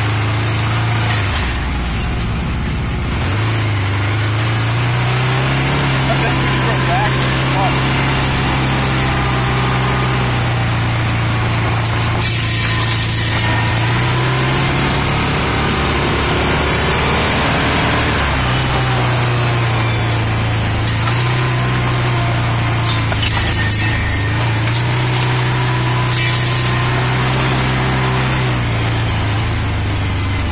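Off-road vehicle engine running as it drives along a trail, its low drone stepping up and down in pitch with the throttle. Several brief rushes of hiss from brush and branches swishing against the body.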